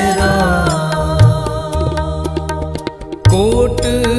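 Gurbani kirtan: a shabad sung to harmonium and tabla, with gliding melodic lines over steady drum strokes. The music thins to a brief lull about three seconds in, then the next phrase comes in.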